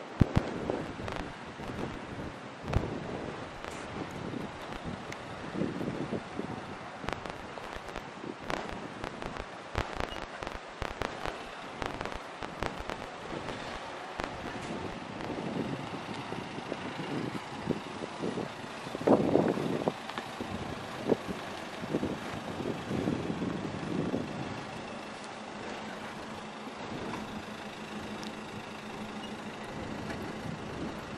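A small hatchback car manoeuvring slowly into a parking space at low engine revs. Irregular crackles and knocks from wind on the microphone run over it, with a louder burst about twenty seconds in.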